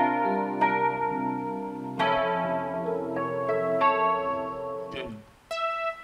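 Roland Fantom 7 synthesizer playing an electric piano sound: sustained chords struck every second or two and left to ring. They fade out about five seconds in, followed by a couple of short single notes near the end.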